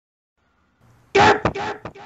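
A short, cough-like burst of a person's voice about a second in, loudest at first and then broken into two or three shorter bits.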